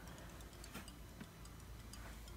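Faint, scattered soft ticks and clicks over quiet room tone: the small sounds of sneakers being handled and turned in the hands.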